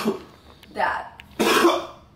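A person coughing and clearing their throat: two short rough bursts, the second and louder about a second and a half in.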